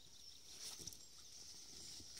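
Near silence: faint outdoor background with a steady high hiss and a couple of soft rustles about three-quarters of a second in.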